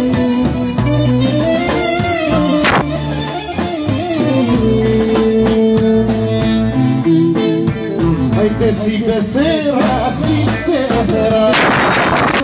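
Live band music played loud through PA speakers: an ornamented melody line over a stepping bass, running without a break.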